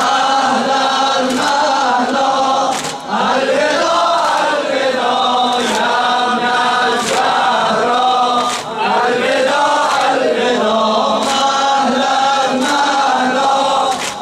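Mourners chanting a Shia noha lament together, with a sharp slap about every one and a half seconds as they strike their chests in time (sinezani).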